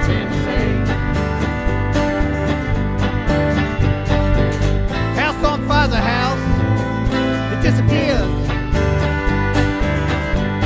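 Live country-Americana band playing: acoustic guitar strumming over bass and drums, with a wavering melody line coming up about five seconds in and again near the end.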